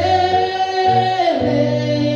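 A woman singing a worship song into a microphone, holding long notes, over sustained keyboard accompaniment.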